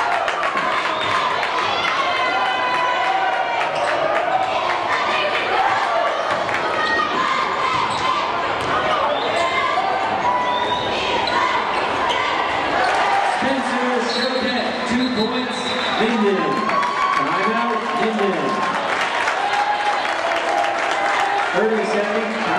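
Basketball dribbled on a hardwood gym floor during play, with the crowd's voices and shouts carrying through the gymnasium.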